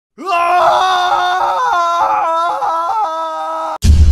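A person's long, drawn-out scream, held on one pitch with a few small breaks, that cuts off abruptly near the end. A sudden deep low rumble takes over.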